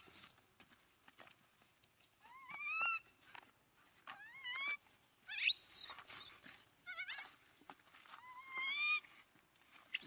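Infant macaque crying: a string of about five rising, whistle-like coos with short pauses between, the one near the middle climbing much higher into a squeal.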